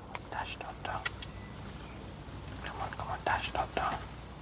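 A man whispering in short, breathy bursts, twice with a pause between.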